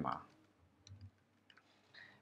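A few faint, scattered computer keyboard keystrokes as code is typed.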